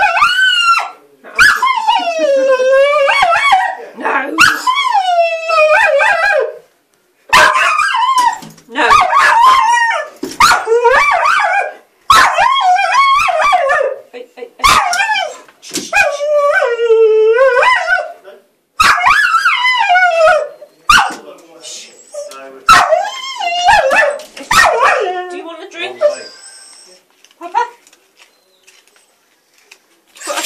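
A dog howling and yelping over and over in long, wavering cries with short sharp barks between them, worked up by a cat outside. The cries die away near the end.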